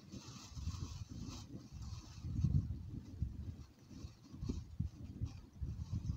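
Low, uneven rumble of wind buffeting the microphone, swelling and fading, with faint rustling of a plastic roasting bag being handled.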